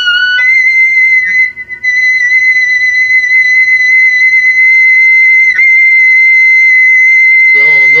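Clarinet played in the altissimo register: a brief lower note leaps up to a very high note that is held steadily for about seven and a half seconds, with a short falter about a second and a half in.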